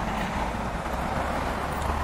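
Steady road traffic noise: an even hiss of passing cars with a low rumble underneath, with no distinct events.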